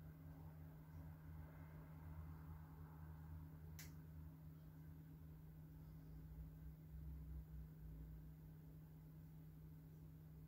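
Near silence: room tone with a steady low hum, and one short high click a little under four seconds in.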